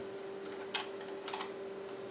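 A few light clicks and knocks as the Elecraft KX3 transceiver is handled and turned around: one about a third of the way in and a quick pair just past the middle, over a steady faint hum.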